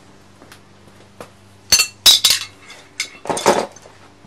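Metal hand tools clinking and clattering together as a wrench is picked out of a pile: a few faint ticks, then a burst of sharp clanks in the middle, and a longer rattle near the end.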